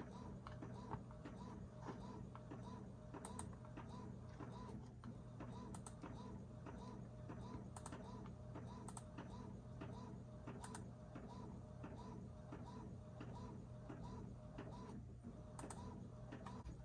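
Epson EcoTank ET-2720 inkjet printer running a print job, faint, with a steady repeating pattern of about two passes a second. A few sharp clicks stand out over it.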